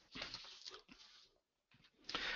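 Near silence, with a few faint short noises in the first second.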